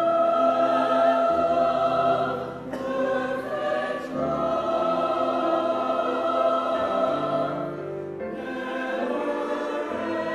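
Church choir singing an anthem in sustained held chords, accompanied on grand piano.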